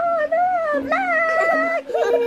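A young child whining in two long, high, wavering cries, the second a little higher and longer.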